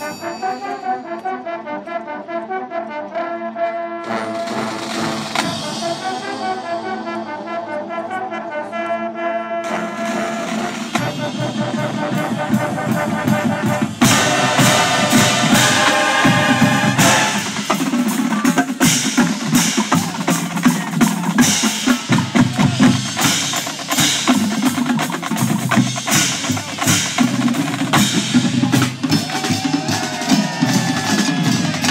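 Drum and bugle corps playing live. For about the first ten seconds the pitched notes of the front ensemble's mallet keyboards lead, then drums come in, and about fourteen seconds in the full corps enters louder, with brass over the drumline.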